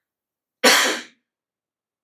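A man coughing once into a close microphone: a single short, sharp cough a little over half a second in.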